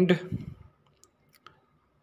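A man's voice trails off in the first half second, followed by a few faint, scattered clicks.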